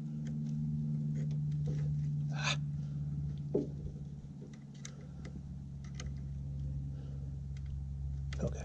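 Faint scattered clicks and rubbing of hands handling rubber fuel hoses and clamps in a car's engine bay, over a steady low hum.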